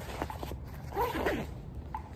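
Fabric backpack's zipper being pulled shut. The zip's rasp, about a second in, is the loudest sound, after a few light taps and rustles as the bag is handled.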